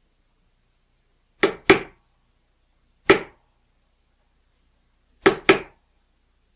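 Hammer tapping a brass punch to drive lead shot pellets into the unused lube holes of a lube-sizer sizing die, plugging them. Five sharp taps: a quick pair, a single tap, then another quick pair.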